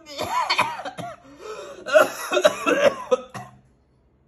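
Woman's solo voice belting an emotional passage with fast, bending vocal runs and sharp breaks, played back through a computer monitor's speakers and picked up by a phone. It cuts off about three and a half seconds in.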